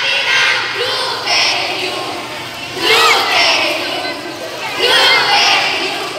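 A group of children shouting a cheer together in repeated loud bursts, with quieter crowd noise between the shouts.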